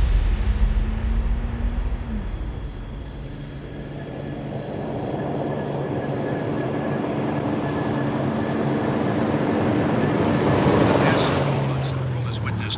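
A loud, steady rumbling roar with a low hum that drops in pitch about two seconds in; it eases off a little, then swells again before fading near the end.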